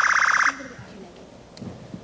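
Quiz-show contestant buzzer: a loud, steady electronic buzz that cuts off suddenly about half a second in, leaving only faint low sounds.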